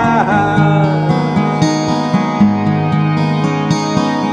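Acoustic guitar playing a slow song's instrumental passage between sung lines, with a held vocal note bending down and fading in the first half second.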